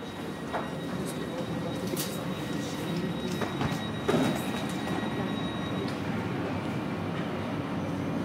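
Steady rumble and hum of an S-Bahn double-deck train standing at an underground platform, with a thin high whine that stops about six seconds in. A few short sharp knocks are heard over it.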